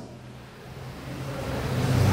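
A pause in speech: room tone of a low steady hum under a faint hiss, growing louder toward the end.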